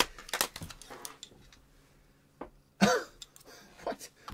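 A man's nonverbal vocal sounds: breathy, laugh-like puffs in the first half-second, then a single short voiced burst with a falling pitch about three seconds in.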